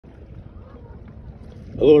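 Faint low rumble of outdoor noise over open water, with light wind on the microphone, then a man says "Hello" near the end.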